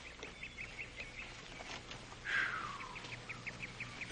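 Faint bird calls: a run of quick high chirps, about five a second, then one call sliding downward in pitch near the middle, then another run of quick chirps.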